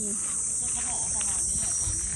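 A steady, high-pitched chorus of insects, with faint voices under it.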